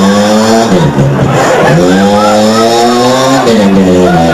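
A man singing solo into a microphone: a short held note, then a long note of about two seconds that rises slightly in pitch before breaking off.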